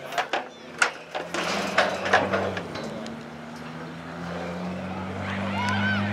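Short shouts from spectators and players on a rugby pitch, several in the first few seconds and more near the end. Under them runs a steady low engine hum that grows a little louder through the second half.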